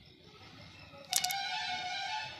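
A sudden short clatter about a second in, then a young boy crying out in one high-pitched, steady wail that lasts to the end.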